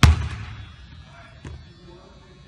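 A loud, boomy thump with a short ring-out, then a fainter knock about a second and a half later.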